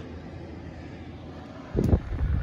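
Toshiba 6000 BTU portable air conditioner running with a steady even rush of fan noise. Near the end a louder low rumble starts, from wind or handling on the microphone.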